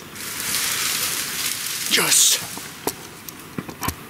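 Rustling of clothing and gear in a tree stand while the camera is swung round, with a short breathy whisper about halfway in and a few light clicks and knocks near the end.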